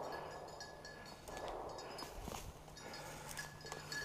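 Footsteps through dry forest undergrowth, with faint rustling and crackling of leaves and brush.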